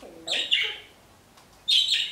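Pet budgie (budgerigar) chirping in two short bursts, one about a quarter-second in and another near the end.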